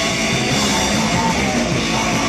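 A rock band playing loud and without a break: guitar and a drum kit with cymbals, in a dense heavy rock or metal sound.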